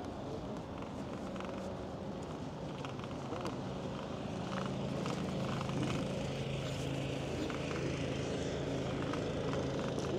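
Steady rush of wind and tyre noise from a moving e-bike, with a low steady hum that grows stronger from about halfway through.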